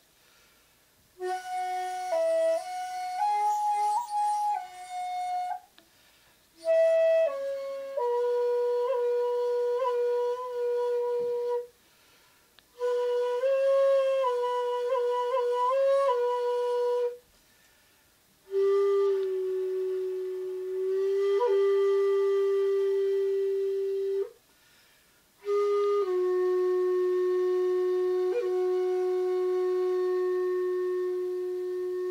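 Shakuhachi, the Japanese end-blown bamboo flute, playing solo honkyoku: five long phrases of held notes with small bends in pitch, each phrase broken off by a short silence for breath. The last two phrases settle on long, lower sustained notes.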